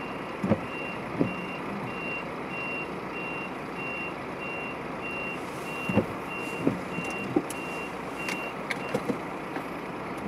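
A vehicle's electronic warning beeper sounding steadily at one high pitch, about three beeps every two seconds, stopping shortly before the end. Under it runs steady road and vehicle noise, with a few short knocks.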